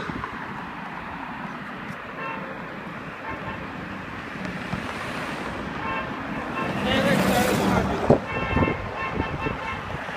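Road traffic passing close by on the road into the underpass, one vehicle going by loudest about seven to eight seconds in. Short runs of high-pitched tones sound now and then over the traffic.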